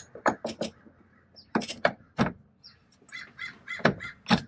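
A rebuilt Lewmar sailboat winch being reassembled: its metal drum is set down on the base and turned by hand, giving a series of sharp metallic clicks and knocks. Near the end comes a quick run of ratcheting clicks as the drum is spun.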